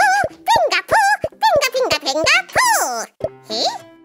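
Cartoon soundtrack: children's music with light clicks, over a run of bouncy, swooping up-and-down pitched sounds about twice a second that stop a little after three seconds in.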